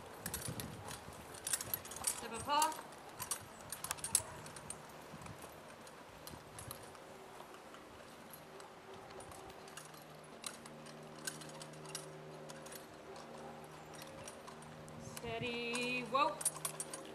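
Morgan horses walking in driving harness: faint, irregular hoof clicks and jingling of harness hardware. A steady low hum sits underneath in the second half.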